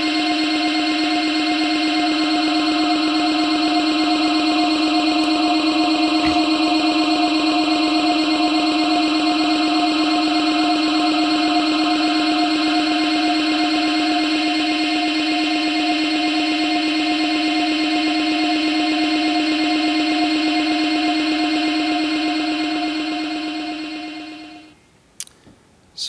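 Electronic drone from the soundtrack of a projected video artwork: a loud, steady mass of several held tones, a low one and a higher one strongest. It fades out a couple of seconds before the end.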